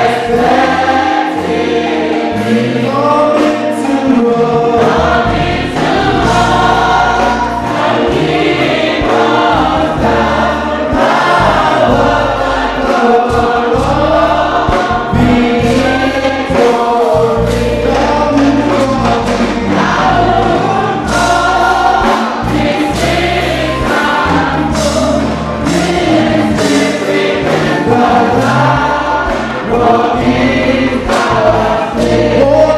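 Church choir and congregation singing a gospel hymn together, with a steady low instrumental backing under the voices.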